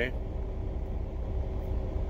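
Steady low rumble of an idling truck engine heard inside the sleeper cab, with a faint steady hum over it.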